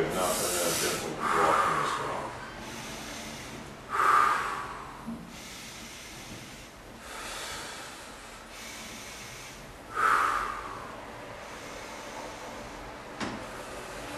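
A man's heavy breathing: loud, rushing breaths every few seconds, the strongest about four and ten seconds in. His breathing has quickened in response to deep leg massage.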